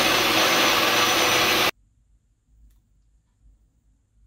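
Countertop jug blender running, puréeing a thick avocado and chocolate protein mousse, with a steady motor noise that cuts off abruptly about a second and a half in.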